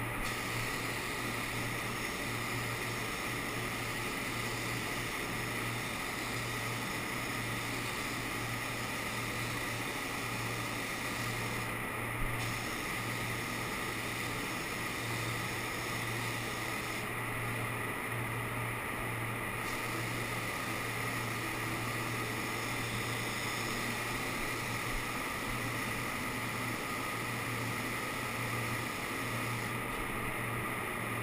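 Air hiss of a gravity-feed paint spray gun spraying, over a steady low hum. The hiss drops out twice in the middle, once briefly and once for a couple of seconds, as the trigger is let off.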